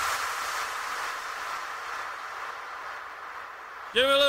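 A steady hiss with no beat, fading slowly: the tail of the transition between two tracks in an electronic dance music mix.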